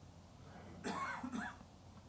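A person coughs twice in quick succession, about a second in.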